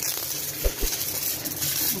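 Stick (arc) welding on a steel plough point: the arc running steadily with a high hiss, and two short low knocks near the middle.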